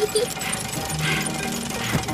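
Cartoon mechanical sound effect of a small pedal-powered toy forklift working as it lifts a block, over light background music.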